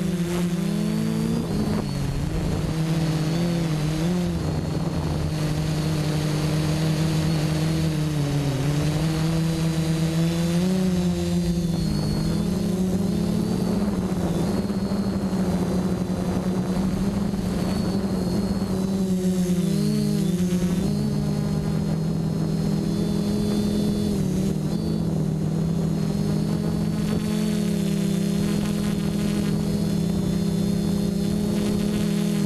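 Quadcopter's electric motors and propellers whining, heard from its onboard GoPro. Several close tones dip and rise in pitch together a few times as the throttle changes, over a rush of air.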